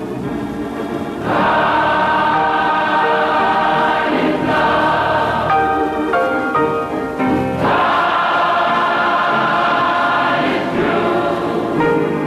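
Gospel mass choir singing in sustained full-voiced chords, swelling up loudly about a second in, with new phrases entering around four and seven and a half seconds in.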